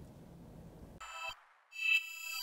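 Faint room tone, then about a second in an electronic outro jingle begins: a synthesised chime-like note that fades, followed by a second, louder one swelling near the end.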